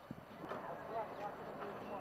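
Indistinct voices in the background, with a few short knocks.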